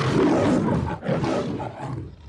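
A lion roaring in two long, rough roars of about a second each, the second weaker and trailing off.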